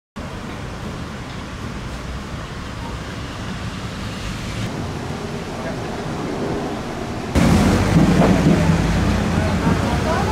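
Outdoor street ambience: a steady rumble of noise, like wind and traffic. About seven seconds in it turns suddenly louder, with the voices of people nearby.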